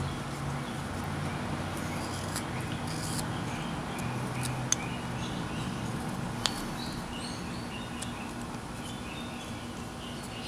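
A small carving knife cutting into a wooden figure, with two sharp clicks about a second and a half apart near the middle, over a steady low hum and faint bird chirps.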